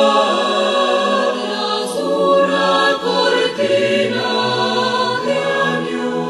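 Mixed choir of men's and women's voices singing in a vocal arrangement, holding sustained chords that change every second or two.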